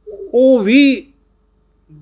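An elderly man's voice breaking into a short, choked sob: one wavering cry, its pitch dipping and rising again, lasting under a second.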